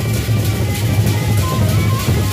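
Gendang beleq ensemble playing on the march: large Sasak double-headed barrel drums beaten in a fast, steady interlocking rhythm, with clashing cymbals on top. A high held tone enters near the end.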